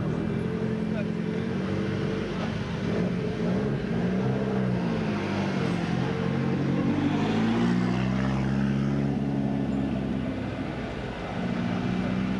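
Ford Sierra Cosworth rally car's turbocharged four-cylinder engine running at low speed close by, its revs rising and falling a few seconds in and climbing again later on.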